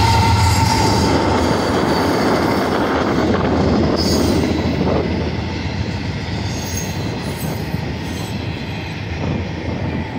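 Freight train passing close by: the low rumble of its trailing GE diesel locomotives fades within the first second. The steady rolling noise of the double-stack container cars' steel wheels on the rail follows, with a few brief high wheel squeals, slowly easing in level.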